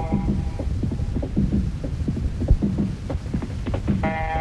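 90s Spanish bakalao dance music from a DJ set, in a stripped-back stretch: a sustained synth chord drops out about half a second in, leaving a deep bass line and drum hits, and comes back right at the end.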